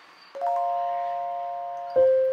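Background music: after a brief lull, a soft keyboard chord rings out about a third of a second in, its notes entering one after another and fading slowly.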